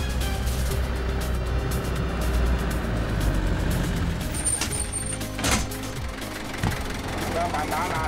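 Minibus engine and road traffic with a steady low rumble under background music, and a single knock about five and a half seconds in.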